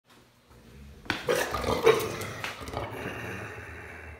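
A dog vocalizing: a quick run of short calls starting about a second in, followed by a quieter drawn-out sound.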